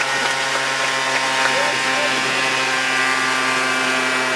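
Yamaha Aerox scooter's 50 cc two-stroke engine idling on the dyno, a steady drone that holds one pitch throughout.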